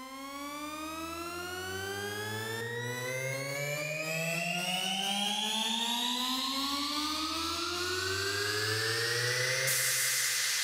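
Electronic music build-up: a synth riser of many tones gliding slowly and steadily upward in pitch over a low sustained bass drone, with a rising hiss of noise swelling in the second half.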